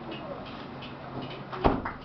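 Low room noise with faint scattered small sounds just after the band's music has stopped, then one loud, sharp thump near the end.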